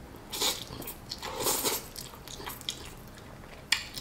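A person eating instant ramen noodles off chopsticks: two loud slurps about half a second and a second and a half in, with chewing between, and a sharp click near the end.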